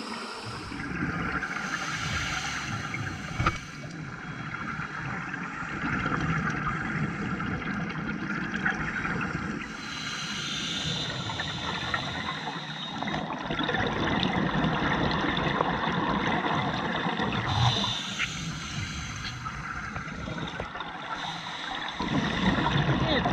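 Underwater recording of a scuba diver breathing through a regulator: exhaled-air bubbles rush out in surges several seconds apart over a steady underwater wash.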